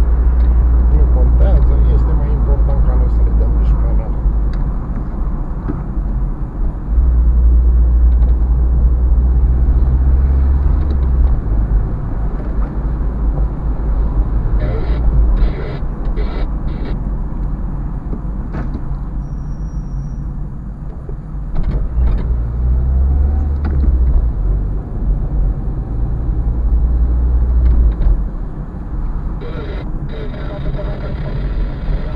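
Car cabin noise while driving: a steady low rumble of engine and tyres that swells and eases with speed, with a short run of clicks about halfway through.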